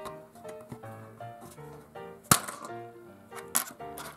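Light background music of short melodic notes, with one sharp plastic snap about halfway through and a softer click near the end as a small plastic toy launcher is triggered against a clear plastic egg tray.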